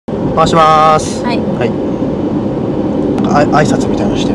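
Steady low road and engine noise inside a moving car's cabin, under talk.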